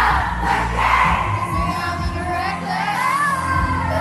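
Pop music with singing, over the noise of a large crowd cheering and singing along.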